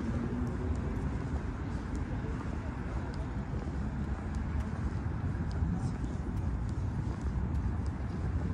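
Outdoor city street ambience: a steady low rumble of urban noise and traffic, with faint voices and light scattered ticks.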